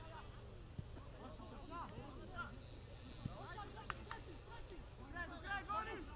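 Players on a football pitch shouting and calling to each other at a distance, in short scattered calls. Two sharp knocks sound close together about four seconds in.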